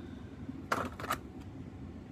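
Two brief clicks of hands handling a small die-cast toy van, one under a second in and one just after, over a low steady hum.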